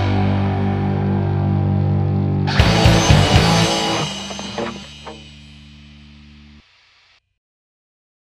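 The ending of a heavy metal song: a distorted electric guitar chord rings out, the band strikes a few closing hits about two and a half seconds in, and the sound then dies away to silence about seven seconds in.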